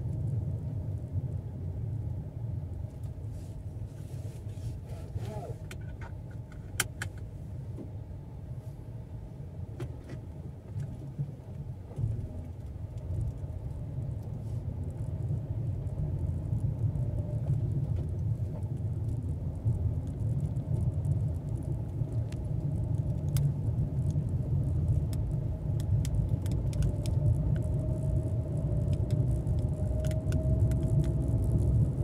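A small car driving on a paved road, heard from inside the cabin: a steady low engine and tyre rumble with a few light clicks and rattles. Near the end the car gets louder and a faint engine whine rises as it picks up speed.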